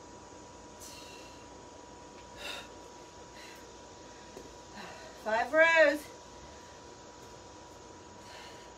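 A woman breathing hard between kettlebell reps, with a few short breaths in the first half and a loud wordless voiced groan of effort, rising then falling in pitch, about five and a half seconds in. A faint steady high tone runs underneath.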